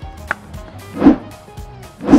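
Background music, with a short thud about a second in as a large foam die is thrown onto the ground.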